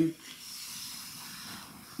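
Shaper Origin handheld CNC router's base being slid across a plywood sheet, a soft steady hissing rub that lasts most of two seconds.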